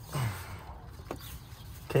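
A short low grunt falling in pitch, then a single faint click, while a hand works a sensor cable among the engine-bay wiring.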